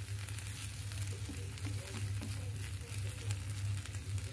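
A stir-fry of green beans, fried tofu and chilli sizzling in a coated wok, stirred continuously with a wooden spatula that scrapes across the pan. A steady low hum runs underneath.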